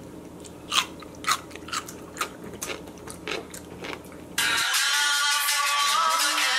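A person chewing a crunchy pickle close to the microphone, with sharp crunches about two a second. About four seconds in, background music cuts in abruptly.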